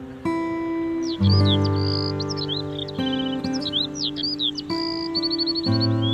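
Instrumental background music: held chords that change every second or two. Many short, high bird chirps run over it from about a second in.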